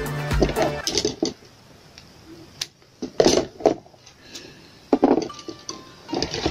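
Background music that stops about a second in, then a few short crackling pulls of vinyl electrical tape being unrolled and wrapped around a coaxial-cable joint, with the loudest pull about three seconds in and another near five seconds.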